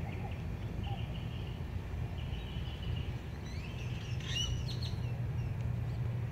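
Birds chirping faintly, with a few short high calls and a quick run of rising chirps about four seconds in, over a steady low background hum.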